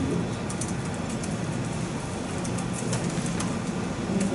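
Room noise of a crowded seminar room with no one speaking: a steady low hum with scattered faint clicks and rustles.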